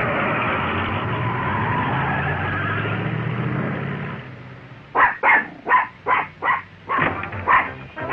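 Background music fading out over the first four seconds, then a small cartoon poodle yapping: a quick run of about eight sharp, high yaps over the last three seconds.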